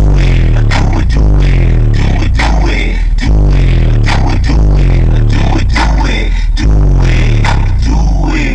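A 12-inch Fi SSD car subwoofer playing a rap track at high volume inside a vehicle cab: deep bass notes stepping in pitch under a steady drum beat.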